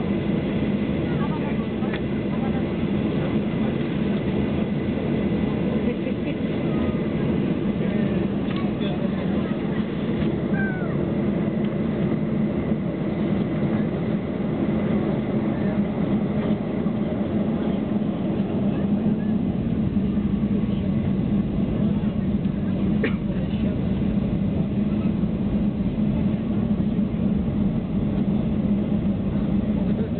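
Steady cabin hum of a Boeing 737-800 taxiing, its CFM56 engines at low power, heard from inside the cabin. It keeps an even low drone throughout with no spool-up.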